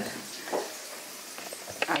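Faint, steady sizzle of meatballs frying in a pan, with a few light clicks near the end.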